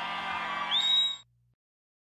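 Low-level sustained tones from a live rock band's stage sound, with a shrill whistle from the audience rising and then holding its pitch about two-thirds of a second in. Then everything cuts off suddenly as the recording ends.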